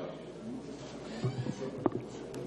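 Pause in a meeting room: low steady room noise with faint, brief voice sounds and a short click near the end.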